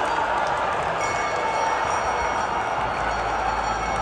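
Large live crowd cheering and applauding, a steady wash of noise. A low bass from the venue's music comes in near the end.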